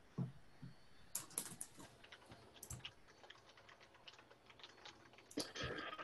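Faint, irregular keystrokes of typing on a computer keyboard, in short scattered runs.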